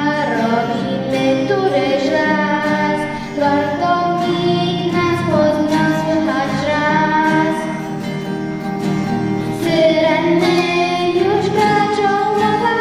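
A young girl singing a song into a microphone, accompanied by an acoustic guitar.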